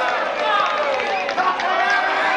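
Fight-club spectators, several men's voices shouting and calling out over one another.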